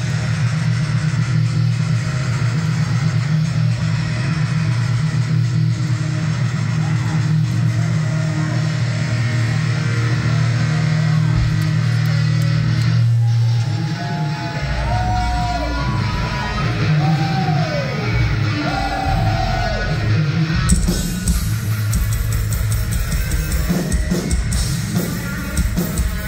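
Live heavy metal band playing: distorted electric guitars hold low notes, with guitar notes bending in pitch about halfway through, and the drum kit comes in with the full band about three seconds before the end.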